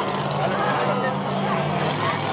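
Monster truck engine idling with a steady low drone, under faint crowd voices.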